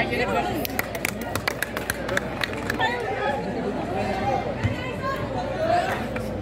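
Several spectators talking and calling out over one another, voices overlapping, with a quick run of sharp clicks in the first half.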